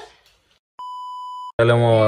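A single steady, high electronic bleep lasting about three quarters of a second, dropped in over a stretch where the soundtrack is muted: an edited-in censor bleep. Speech cuts off just before it and comes back loudly right after.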